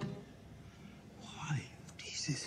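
Hushed, whispered speech beginning about a second in, after the last notes of a song fade out.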